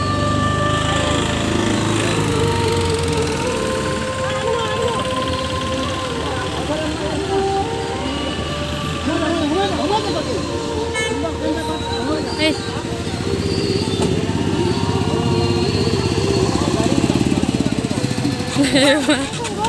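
A voice singing long, held notes that step from pitch to pitch, amplified through a loudspeaker, over the low running of small truck engines as the procession vehicles pass.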